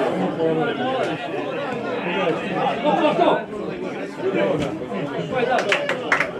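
Several people talking over one another close to the microphone, a steady chatter of spectators' voices, with a few sharp clicks near the end.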